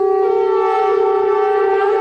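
Long, steady horn-like wind-instrument notes, two slightly different pitches sounding together, the second joining a moment in.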